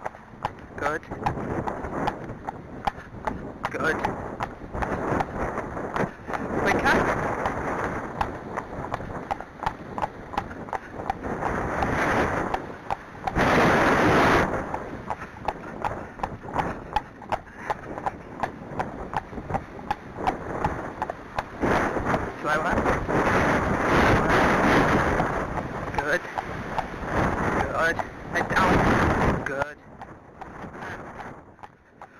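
Horse's hooves clip-clopping on a paved lane, with wind buffeting the microphone in loud gusts.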